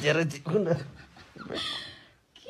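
A man's voice, drawn out and wavering in pitch, trailing off after about a second, then a short breathy sound near the end.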